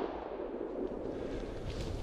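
The echo of a shotgun shot fading in the first half second, then a steady low background hiss.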